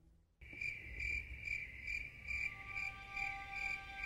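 Cricket-like chirping, about two to three chirps a second, starting abruptly after a brief near-silent gap as part of a background music track. Soft sustained musical tones come in about halfway through.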